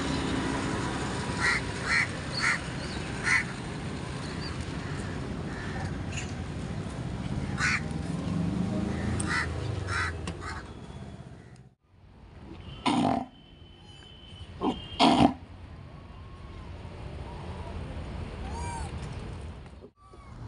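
Roadside outdoor ambience with a steady low traffic rumble and a few short, sharp calls. After a sudden cut about twelve seconds in, two loud, harsh animal calls about two seconds apart stand out, followed by a few faint bird chirps.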